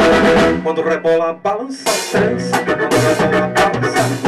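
Live band playing an upbeat merengue on acoustic guitar, keyboard, bass, drum kit and percussion. The music thins out briefly about a second and a half in, then the full band comes back in.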